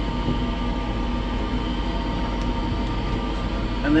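Steady mechanical hum and rumble, even throughout, with a constant low drone.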